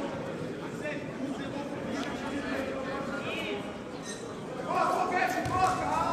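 Indistinct voices and chatter echoing in a large hall, with one voice coming up louder near the end.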